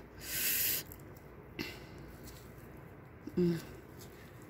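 A short hiss lasting about half a second, then faint rustling of sphagnum moss and roots being handled on a phalaenopsis orchid's root ball, and a brief hummed 'mm' near the end.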